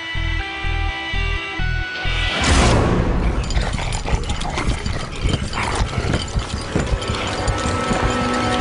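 Film trailer music: a low, pulsing drum beat about twice a second under held tones. About two and a half seconds in, a loud whoosh and hit breaks in, and the music carries on dense and loud.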